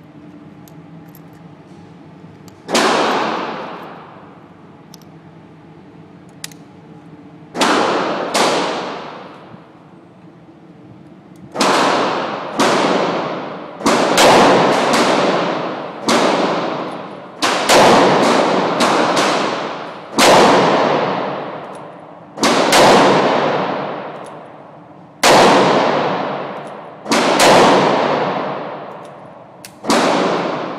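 Gunshots in an indoor shooting range, among them a Ruger Super Redhawk Alaskan .44 Magnum revolver, each sharp report ringing off the walls. A low hum comes first; about three seconds in come single shots, then from about a third of the way through a quick, irregular run of shots.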